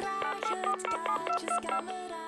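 Mobile phone keypad beeps as a number is dialled: a quick run of about ten short electronic tones, each at a different pitch, over a steady low note.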